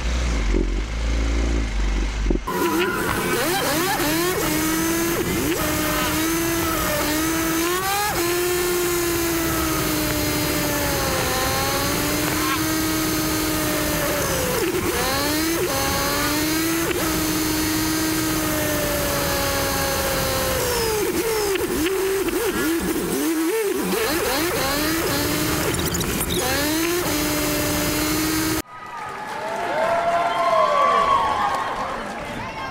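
Motorcycle engine of a tricycle running under way, heard from inside the sidecar cab, its note rising and falling over and over with throttle and gear changes. A low rumble comes before it for the first couple of seconds.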